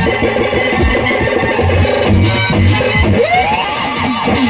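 Live stage music from an electronic keyboard over a steady drum beat. A rising glide in pitch comes near the end.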